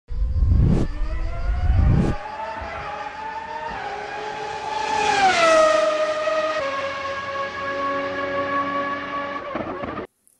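Race car sound effect: two low, loud rumbles in the first two seconds, then a high engine note that climbs slowly, drops in pitch about five seconds in and holds steady before cutting off just before the end.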